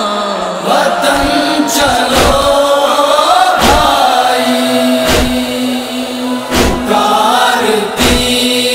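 A male voice singing a noha in a long, drawn-out melodic line over a held, hummed drone, with a deep thump about every second and a half.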